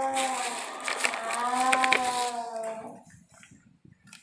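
A person's voice drawn out in two long, held notes with a slight bend in pitch. The first fades just after the start, and the second comes about a second in and lasts about a second and a half, with a few sharp clicks over it.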